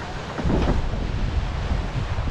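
Water rushing and splashing past a Fareast 28R yacht's hull as it sails fast under spinnaker, with wind buffeting the microphone. The noise is steady, with a louder surge about half a second in.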